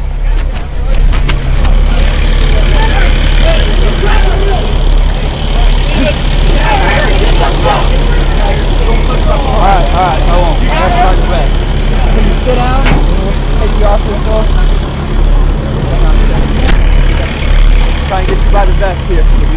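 Heavy vehicle engine running steadily, a loud low drone, with a few sharp clicks near the start. Indistinct voices carry over it, busiest around the middle.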